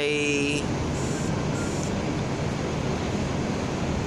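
Steady low rumble of double-decker bus diesel engines idling at the stands of an enclosed bus terminus.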